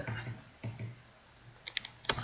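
Computer keyboard keys being pressed: a few soft keystrokes, then a quick run of three or four clicks near the end.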